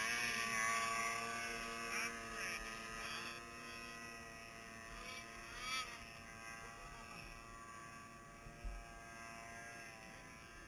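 Snowmobile engine running with a steady, buzzing drone that slowly grows fainter, with brief swells about two and six seconds in.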